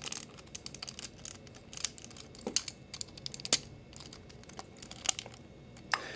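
Hard plastic parts of a Transformers action figure clicking and rattling as they are handled and pressed together, a scatter of small irregular clicks with two louder snaps around the middle.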